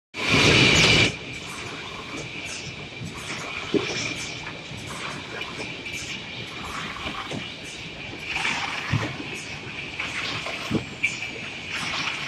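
Servo-driven case erector running on a packaging line: a steady high whine over continuous mechanical clatter, with irregular knocks from its moving parts. A loud burst of noise fills the first second.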